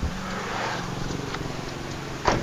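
A steady low hum, with a sharp click right at the start.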